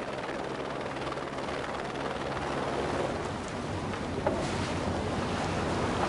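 Steady rushing wind and water noise over a low, steady engine hum, as from a vessel or aircraft alongside a ship at sea.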